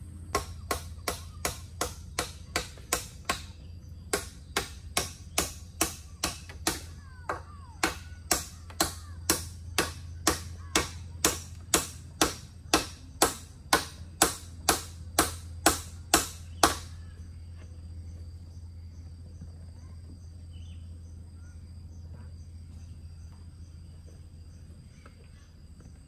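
Hammer driving nails into a timber roof frame: sharp ringing strikes, two or three a second, in three runs with short pauses, stopping about 17 seconds in.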